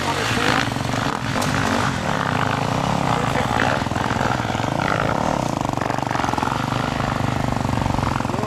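KTM four-stroke dirt bike engine running at a fairly steady pitch while the bike climbs a steep dirt track.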